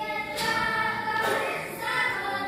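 A group of children singing a Posavina folk song together in held, sustained notes. A new sung phrase enters about half a second in and another near the end.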